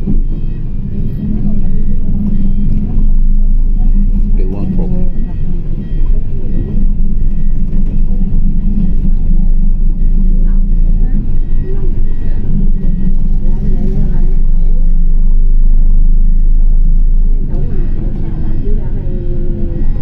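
Engine and road rumble heard from inside a moving city bus, loud and steady, with voices at times.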